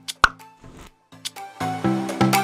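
A single sharp plop, like a pop sound effect, a quarter of a second in. Then, about a second and a half in, upbeat background music begins with a steady plucked beat.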